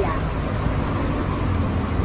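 Steady street noise: a low rumble of road traffic with an even hiss.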